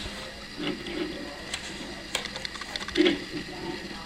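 Light handling of a small die-cast toy car on a wooden table: a few faint clicks and a low murmur, as the car is turned around.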